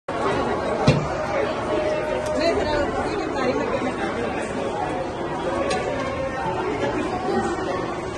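Voices and chatter in a large indoor hall, with one sharp knock about a second in and a few faint clicks.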